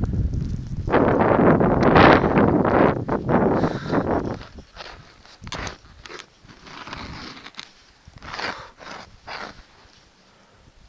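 Skiing in deep snow: a loud rushing of skis through snow and air over the camera for the first four seconds or so. Then come short, separate crunches of skis and poles shuffling and plunging in deep snow.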